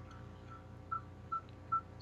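A string of short, faint, tone-like blips at one steady pitch, about two to three a second and a little stronger in the second half: computer clicks coming through Skype call audio.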